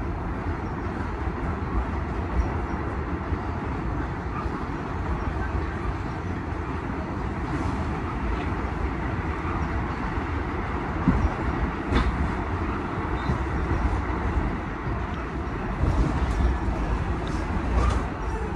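An R46 New York subway car running on elevated track, heard from inside the car: a steady rumble of wheels on rail. A few sharp clacks come about two-thirds of the way through and again near the end.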